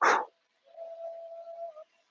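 A brief burst of noise, then an insect buzzing close by as a steady, even hum for about a second.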